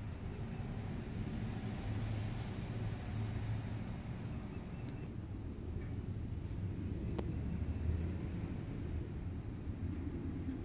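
Steady low rumble of road traffic, swelling a little twice as vehicles go by, with a single sharp click about seven seconds in.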